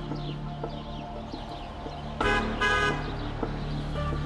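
A car horn giving two short toots, a little over two seconds in.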